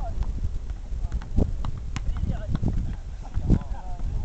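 Players' short shouts and calls during a football kickabout, with a few sharp thuds of the ball being kicked over a steady low rumble, likely wind on the microphone.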